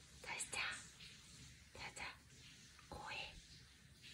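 A person whispering softly in short breathy bursts, three or four times.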